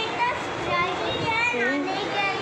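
Speech: a child's voice talking over the steady hubbub of a busy room.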